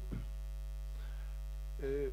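Steady low electrical mains hum in the microphone and sound system, running unchanged through a pause in a man's speech. His voice comes back briefly near the end.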